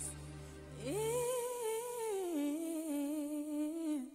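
A solo singing voice from the recording, swooping up into a long held high note with vibrato, then stepping down to a held lower note. A backing with bass notes fades out in the first second.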